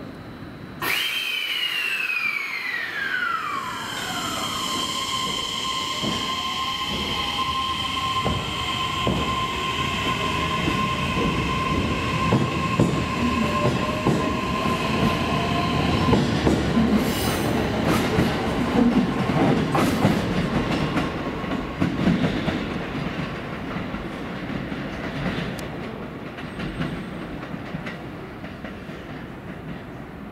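E131-1000 series electric train pulling out: its inverter and traction motors start up about a second in with whining tones that glide downward, then hold a steady high whine while a lower motor tone rises as the train gathers speed. About halfway through the whine stops and the wheels clatter over the rail joints and points as the cars pass, fading toward the end.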